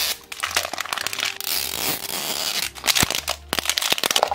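Thin plastic wrapper being torn and peeled off a toy capsule ball by hand, crinkling and crackling with many small snaps.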